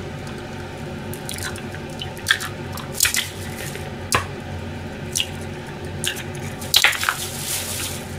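Raw eggs being cracked against the rim of a stainless steel mixing bowl: several sharp taps of shell on metal spread out over the few seconds, with wet squishing as the eggs drop onto shredded cabbage and flour.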